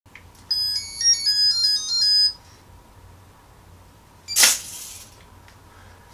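A quick electronic melody of high, pure beeps from the Petoi Bittle robot dog's buzzer, lasting about two seconds, the tune it plays on starting up. About four and a half seconds in, a brief rushing noise.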